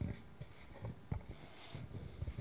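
Faint rustling with scattered light knocks and clicks, the kind of handling and movement noise heard in a pause between speakers.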